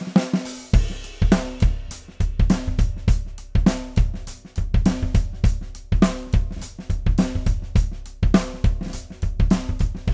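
Acoustic drum kit played in a steady groove: bass drum with a ported Evans front head thumping under snare, hi-hat and cymbal strokes, with the drums ringing between hits.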